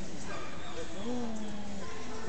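Indistinct voices, with a dog making short whimpering vocal sounds.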